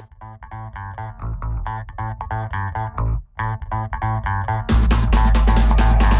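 Instrumental background music: a rhythmic line of repeated pitched notes over a bass line, breaking off briefly about three seconds in, then a much louder, fuller section with a steady beat near the end.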